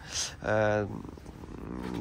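A man's voice: a short breath, then a drawn-out, held hesitation sound like "uhh" lasting about half a second, between sentences.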